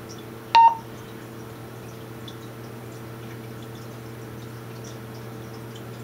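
A single short electronic key beep from a Wouxun KG-816 VHF handheld radio, about half a second in, as a button is pressed while entering a channel name. A steady low hum runs underneath.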